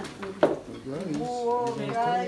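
Two sharp clinks of kitchenware in the first half second, the second one the loudest, followed by a person's voice holding long, drawn-out notes.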